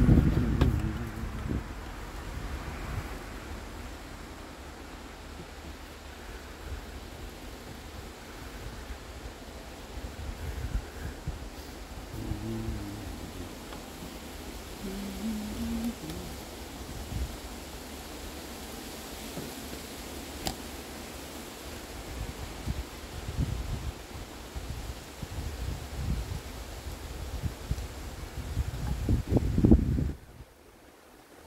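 Wind buffeting the phone's microphone, a fluctuating low rumble with stronger gusts at the start and near the end, along with rustling and handling noise as cloth is moved close by.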